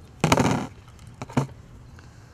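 Small scissors and hooklink being handled over a plastic bucket lid: a half-second rustling clatter, then two sharp clicks just over a second in.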